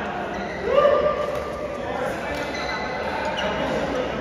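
Echoing sports-hall sound between badminton rallies: voices, with one drawn-out vocal call about a second in that is the loudest thing, and light knocks of play and movement on the court.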